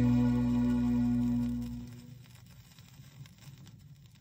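A song played from a vinyl LP on a turntable ends on a held chord that fades out about two seconds in. Faint crackles and clicks of the record's surface noise follow.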